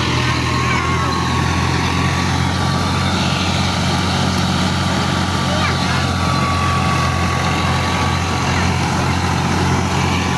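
Tractor-driven wheat thresher running steadily at full work, the tractor engine's low hum under the thresher's dense rushing noise and a thin steady whine, as wheat is fed in.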